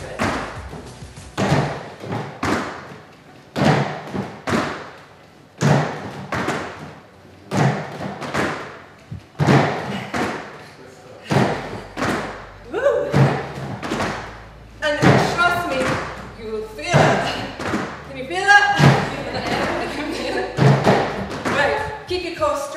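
Trainers landing on plastic aerobic step platforms and a wooden floor in repeated jump-ups, a thud about once a second, sometimes doubled. From about halfway through, breathing and voice sounds from the exercisers come in with the landings.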